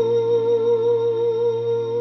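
Backing music: a sustained organ-like keyboard chord over a held low bass note.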